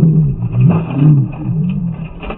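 A voice slowed down with the footage, drawn out and deep, its low pitch wavering up and down.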